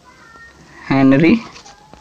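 A man's voice giving one drawn-out, held syllable about a second in, lasting about half a second.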